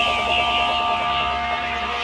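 Psytrance breakdown with no kick drum: sustained synth tones over a low drone, a fast rippling synth pattern that fades about halfway through, and a high wavering synth line.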